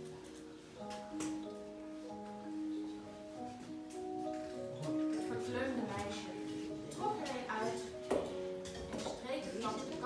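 Electronic keyboard playing a slow melody of held notes, one after another.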